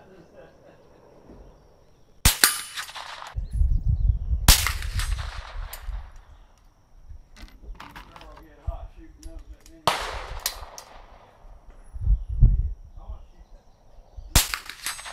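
A suppressed .22 LR Chiappa Little Badger rifle fired a few times at irregular intervals. Each report is a sharp crack followed by a short ring-out.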